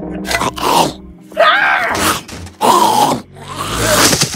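A cartoon character's groans and grunts: four short vocal bursts with wavering pitch, separated by brief gaps.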